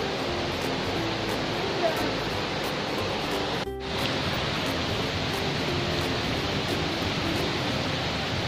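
Steady rush of flowing stream water, with quiet background music over it. The sound breaks off for an instant a little before four seconds in, then the water resumes.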